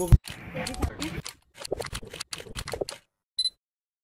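Choppy, quickly cut fragments of voices mixed with sharp clicks and knocks, breaking off about three seconds in; then a single short, high electronic beep in silence.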